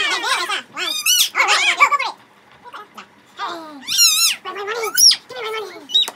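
Young girl's high-pitched squealing laughter in repeated short bursts, with a pause of about a second midway.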